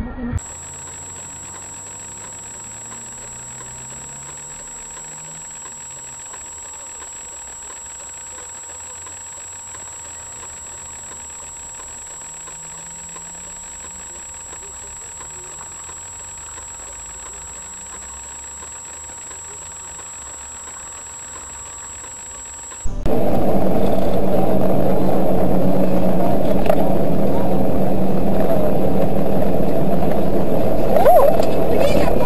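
Car interior sound from a dashcam: a faint engine rising and falling in pitch under a steady high electronic whine. About 23 seconds in it cuts suddenly to loud, steady road and engine noise.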